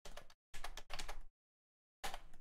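Computer keyboard and mouse clicks in two short clattery bursts, each cutting off abruptly into dead silence as the microphone's noise gate closes.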